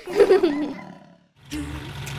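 A short cartoon dinosaur roar that falls in pitch and fades over about a second. After a brief gap, bouncy children's music with a steady beat starts about halfway through.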